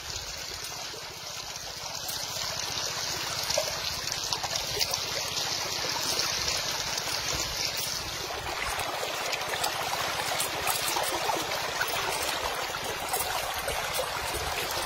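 Shallow river water running and splashing around a person's legs and into a hole in the bank, with light clinks of a metal chain being handled.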